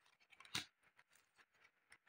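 Near silence with one faint, short click about half a second in: a playing card being drawn from the deck and laid down on a woven placemat.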